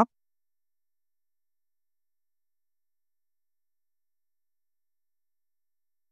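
Near silence: the sound drops to dead silence between spoken phrases.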